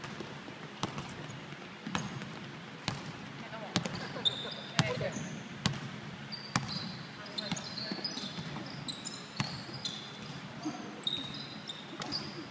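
A basketball dribbled on a wooden gym floor, bouncing about once a second. From about four seconds in, short high squeaks come from sneakers on the floor.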